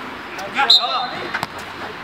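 A referee's whistle gives one short blast a little under a second in, stopping play for a foul, amid players' voices calling out on the pitch. A single ball knock follows.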